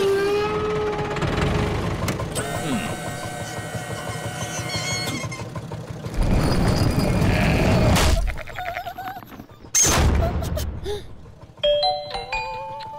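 Animated cartoon soundtrack of music and sound effects, with short wavering bleat-like character voices. A sudden loud hit comes about ten seconds in.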